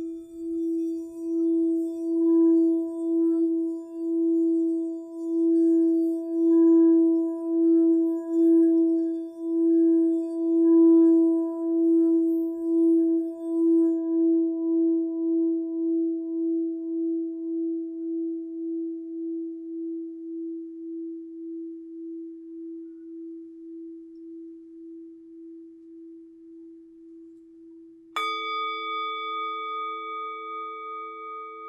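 Hammered Tibetan singing bowl rimmed with a covered wooden mallet: its low tone swells and pulses in a steady wobble, then rings on and slowly fades once the rubbing stops about halfway through. Near the end a higher metal tone is struck and rings over the fading bowl.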